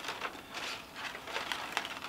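Faint rustling of card stock with a few small scattered ticks as a fairy-light wire is pushed down into the top of a paper theater.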